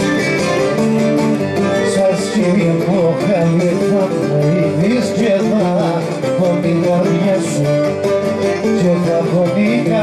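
Cretan traditional music played live: plucked string instruments keep up a steady accompaniment under a wavering, ornamented melody line.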